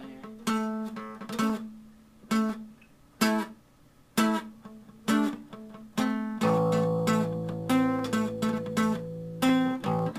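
Acoustic guitar and an electric guitar played together: single strummed chords about once a second, then about six seconds in the sound fills out with sustained low notes and chords ringing under continued strumming.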